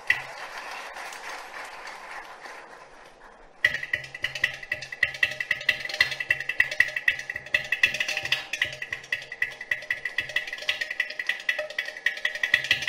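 Carnatic concert percussion, mridangam and ghatam, playing a fast, dense rhythmic passage that starts suddenly about three and a half seconds in, after a few quieter seconds.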